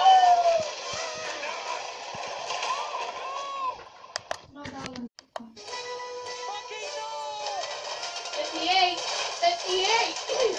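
Animated film soundtrack playing from a television: music with gliding, whistle-like tones and sound effects. It breaks off for a second or so of sharp clicks about four seconds in, then picks up again.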